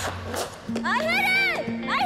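A woman cheering in high-pitched whoops, one rising and falling call about a second in and another starting near the end, over background music with a held chord.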